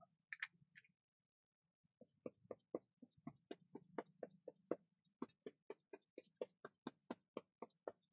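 A paintbrush dabbing paint onto paper strips, making a run of faint, quick taps about four a second that starts about two seconds in.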